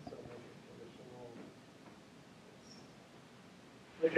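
Near silence: quiet room tone, with a faint murmur of a voice in the first second and a half.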